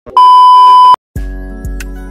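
Television test-pattern tone sound effect: one loud, steady, high-pitched beep lasting just under a second, which cuts off suddenly. After a short silence, music with a deep bass beat starts about a second in.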